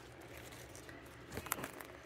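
Quiet indoor room tone, with a few faint clicks about a second and a half in.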